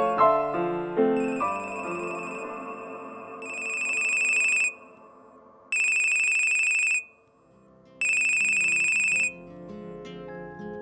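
Piano music dies away, then a mobile phone rings three times with a high, trilling electronic tone, each ring about a second long and the first swelling in gradually.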